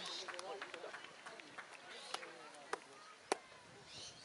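Faint distant voices calling and shouting, with three sharp clicks in the second half, the last the loudest.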